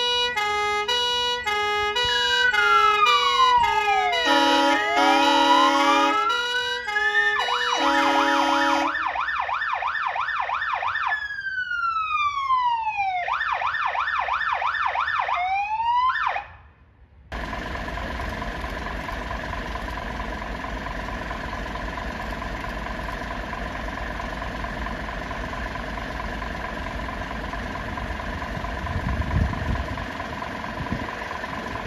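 Electronic siren on a Volvo fire and rescue truck, run through its tones: a stepped alternating tone, then slow falling and rising wails, then fast yelps. It cuts off suddenly about seventeen seconds in, and a steady engine idle with a thin high whine follows.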